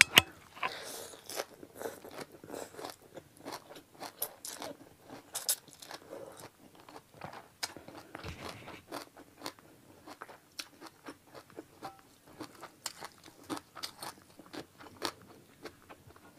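Close-miked chewing of a mouthful of khanom jeen rice noodles and fresh parsley: a sharp bite right at the start, then many small, irregular crunching clicks, a few each second.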